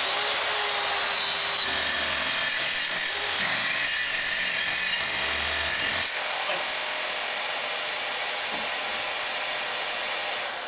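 Kreg plunge track saw running and cutting along its track through a wood-and-epoxy river tabletop, with the hose-connected Fein Turbo I dust extractor running alongside. The saw cuts off suddenly about six seconds in, and the dust extractor keeps running steadily on its own.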